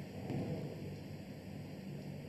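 Faint steady hiss with a low hum from the open remote broadcast line while nobody speaks, swelling slightly about half a second in.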